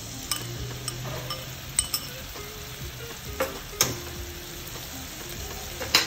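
Soy sauce mix sizzling in a hot wok of frying bell peppers and dried red chillies, just after being poured into the oil. A few sharp clicks break through the steady sizzle.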